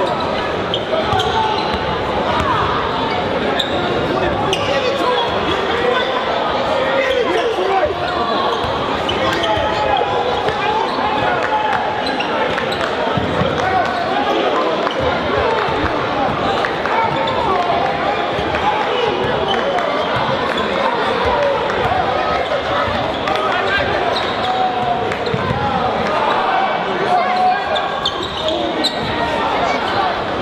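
A basketball dribbling and bouncing on a gym floor during play, with a constant chatter of spectators echoing through the large hall.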